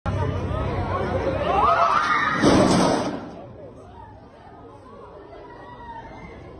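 Crowd of people talking and calling out, with a loud crash about two and a half seconds in as the bleachers collapse under them. After the crash the voices drop to a quieter murmur.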